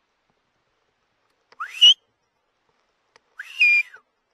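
Two short, loud whistles made close to the scope's microphone. The first slides quickly up in pitch, about a second and a half in. The second, near the end, rises, holds briefly and falls away.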